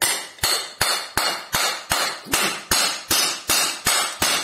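Steady run of about eleven hammer blows, roughly two and a half a second, on a car alternator's aluminium housing, each with a short metallic ring, to knock loose the rotor stuck in the casting; the rotor still holds fast.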